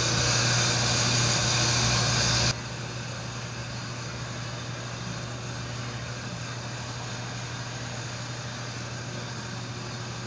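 Steady hum and hiss of running shop machinery. About two and a half seconds in the hissing part cuts off sharply, leaving a lower steady hum.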